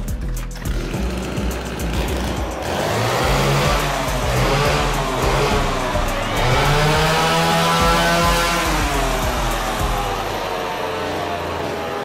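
Chainsaw engine revving, its pitch rising and falling twice, over background music with a steady bass.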